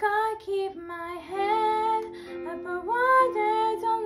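A girl singing solo, holding notes and sliding between them, over a steady accompaniment of sustained notes.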